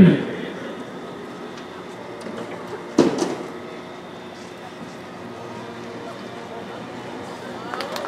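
Low, steady open-air stadium ambience. The announcer's amplified voice echoes away at the start, and one short, sharp sound comes about three seconds in.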